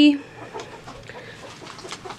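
Silkie chickens clucking quietly in the coop and yard.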